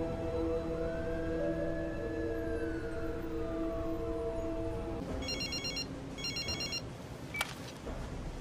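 Film score of held tones with a slow gliding line that stops about five seconds in. Then a phone rings twice in short electronic trills, and a sharp click follows.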